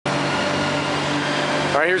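Steady machinery hum in an ice arena: a constant low drone with a hiss over it. A man starts speaking near the end.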